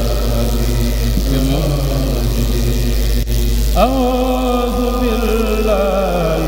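Unaccompanied chanting of Mouride khassaid (Sufi religious poems) by a kourel, with held, wavering vocal lines. After a brief break a little past halfway, a single voice comes in with a rising glide and sustained notes. A steady low hum runs underneath.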